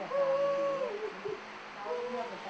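A woman's voice wailing in mourning over a body, one high held cry that falls away after about a second.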